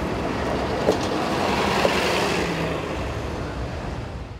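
City transit bus pulling away and passing, its engine and tyre noise swelling to a peak about halfway and then fading, with two short knocks about a second apart.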